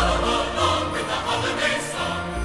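Choir singing a Christmas song over an orchestral accompaniment, with a strong bass note entering at the start.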